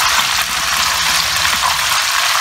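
Breaded meatballs shallow-frying in hot oil in a nonstick pan, the oil sizzling loudly and steadily, while a fork turns them.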